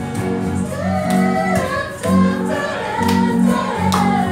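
A small group of voices singing a song together, accompanied by a strummed acoustic guitar.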